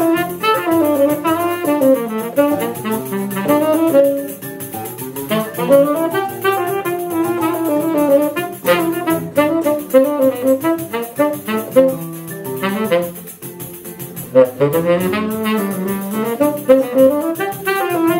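Tenor saxophone playing a choro-sambado melody over seven-string guitar and pandeiro. The music drops briefly quieter about thirteen seconds in, then picks up again.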